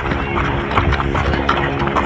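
Running footsteps on pavement, shoes slapping the ground in a quick, uneven patter.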